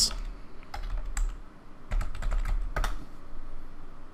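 Keystrokes on a computer keyboard typing a file name: irregular key clicks, most of them bunched together about two to three seconds in.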